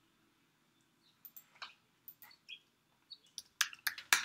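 Faint computer clicks: a few scattered mouse clicks, then a quick run of keyboard keystrokes near the end as a short word is typed.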